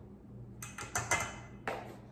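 A measuring spoon clicking and tapping against a plastic cornstarch canister as tablespoons of cornstarch are scooped out: a quick cluster of about five or six sharp clicks starting about half a second in.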